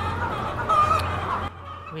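Chickens, Lương Phượng pullets, clucking, with one louder, higher call about three-quarters of a second in, over a steady low hum that cuts off about a second and a half in.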